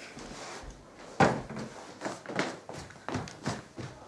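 Footsteps walking briskly indoors: about seven separate, uneven thuds starting about a second in.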